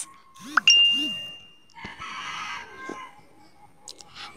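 A single high ding, a short rising chirp that settles into a steady tone ringing for about a second, followed by fainter, hoarser background sounds.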